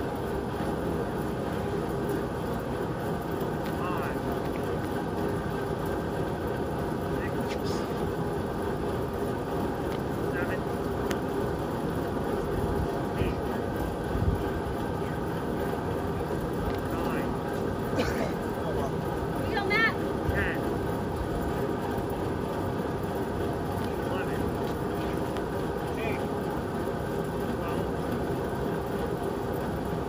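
Large drum fan running with a steady whirring drone. A few brief knocks and thumps come through between about the middle and two-thirds of the way in.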